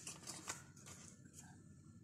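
Near silence: room tone with a few faint clicks and rustles.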